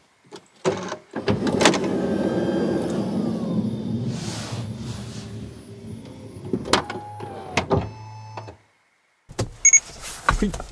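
Honda Odyssey Hybrid's power sliding door closing. Its motor runs steadily for several seconds, with a few sharp clicks as the door latches and pulls shut, then the motor stops abruptly.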